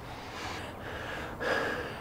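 A man's audible breaths, a short one and then a longer, louder one, in a tense pause.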